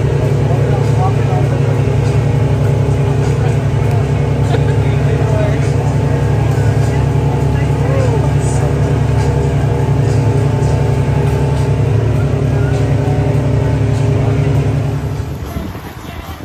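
Power catamaran's engines running steadily under way, a loud, even drone that cuts off about a second before the end, leaving quieter water sound.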